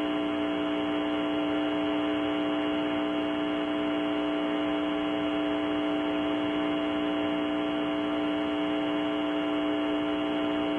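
Steady electrical hum with a few strong steady tones over hiss, on the 1968 mission-commentary audio line during a gap between call-outs. Nothing starts, stops or changes.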